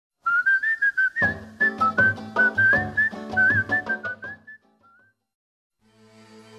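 A short, jaunty whistled tune over a rhythmic strummed-chord accompaniment, the chords coming in about a second after the whistling starts. The jingle ends about four and a half seconds in.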